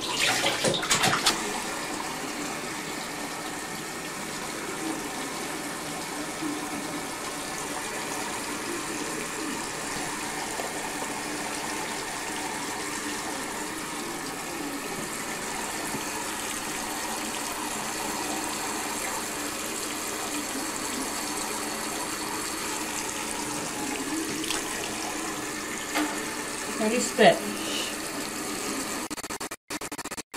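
Water running steadily from a tap, a constant rush of noise, with a short voice sound near the end. The sound drops out in brief gaps just before the end.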